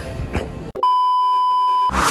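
Electronic beep sound effect: one steady pure tone held for about a second, starting abruptly partway in and cutting off sharply.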